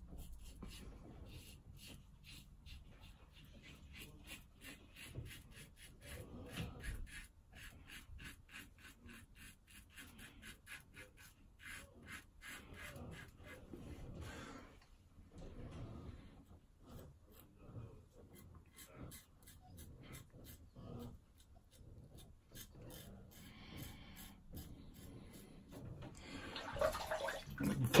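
A Gillette Super Speed safety razor with a Mühle blade scraping through lathered stubble in many short strokes, a faint rasping.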